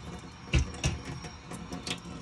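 Water from a water ionizer's flexible spout running steadily into a stainless steel sink. Two dull thumps come about half a second and just under a second in.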